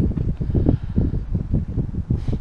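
Wind buffeting the microphone: an uneven low rumble that swells and drops in gusts.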